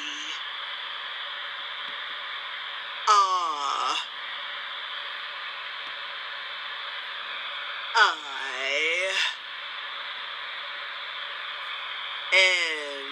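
Steady hiss and low hum playing through a phone's speaker from the spirit-board app. Twice, about 3 and 8 seconds in, the app's Madame Leota voice gives a short call with swooping pitch as it announces the letter the bat talisman has been set on.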